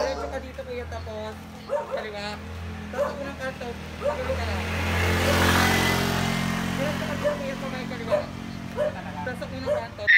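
A motor vehicle engine running close by, its sound swelling to a peak about halfway through and then easing off as it passes, amid voices and a dog barking.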